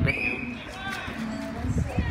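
Voices: a brief high-pitched call at the very start, then faint talking.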